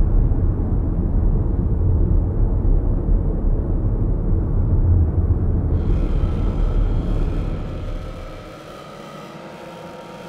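Dark ambient music: a deep rumbling drone that fades away in the last couple of seconds, while a higher sustained pad of steady held tones comes in about six seconds in.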